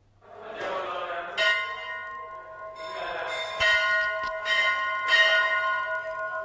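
Hindu temple bells rung again and again, each fresh strike adding to a steady, overlapping ringing, over the noise of a crowd of devotees.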